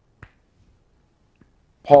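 A pause in a man's speech, broken by one short click about a quarter second in and a fainter tick later; the man starts speaking again near the end.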